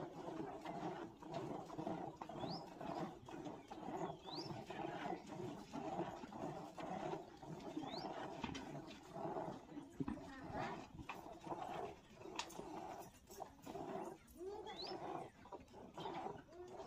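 Hand-milking a water buffalo into a plastic bucket: milk squirting in a steady rhythm, about two squirts a second. A few short, high rising chirps come through now and then.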